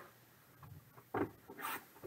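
Cardboard trading-card box being handled and set down on a table: a knock just over a second in, then a brief scraping rub.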